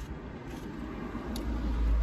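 Low vehicle rumble heard from inside a car, swelling near the end, with a few faint clicks from plastic forks and a foam food container.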